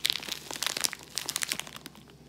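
Clear plastic zip-lock bag of dried honeysuckle crinkling as gloved hands turn it over: a rapid run of crackles that dies away near the end.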